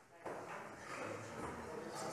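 Faint, indistinct murmur of several voices in a large chamber, starting about a quarter second in after a brief hush.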